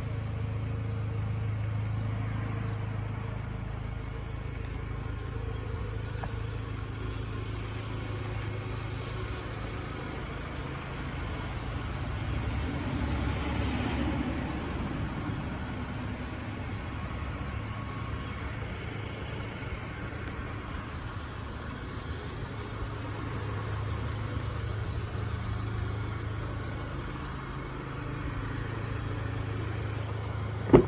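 A vehicle engine idling steadily, swelling louder for a couple of seconds about halfway through.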